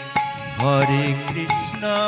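Bengali kirtan music: a harmonium holds steady chords, khol drums keep up a steady run of strokes, and a male voice slides upward into a long held note of the chant about halfway through.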